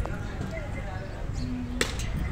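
Background voices of people over a low steady rumble, with one sharp click near the end.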